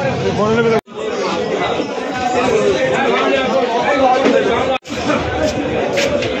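Loud chatter of several people talking over one another among the fish traders, with two sudden split-second cutouts in the sound, about a second in and near the end.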